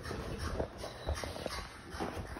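A dog making faint, short sounds, mixed with a few light clicks and scuffs.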